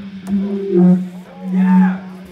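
Live heavy band: a vocalist's harsh, roaring screams through the PA over a steady held low amplified note, swelling loud twice.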